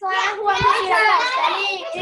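Many children's voices at once, excitedly shouting and chattering over one another without a break, with a brief low thump about half a second in.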